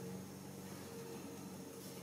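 Quiet room tone with a steady low hum and no distinct handling sounds.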